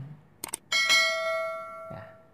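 A single struck bell-like metallic ring about two-thirds of a second in, just after two light clicks, holding several steady pitches and slowly fading over more than a second.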